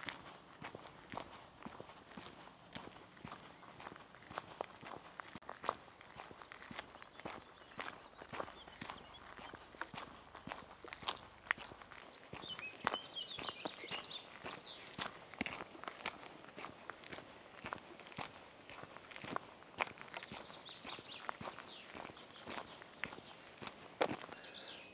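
A hiker's footsteps on a mountain trail, a steady walking rhythm of about two steps a second. Faint high-pitched sounds come in from about halfway through.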